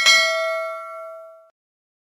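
Notification-bell chime sound effect: a bright bell ding that rings on, fading, for about a second and a half before cutting off abruptly.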